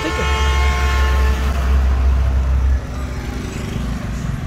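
Hyundai Click engine running in the open engine bay: a steady low hum with a whine of several even tones that fades over the first two seconds, the hum dropping in level near three seconds in.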